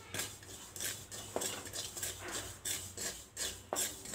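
Wooden spatula scraping and stirring poppy seeds as they dry-roast in a metal kadhai, in quick repeated strokes, about three a second.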